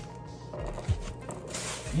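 Quiet background music, with brief handling noises: a soft knock about a second in and a short crinkle of plastic packaging and a grocery bag.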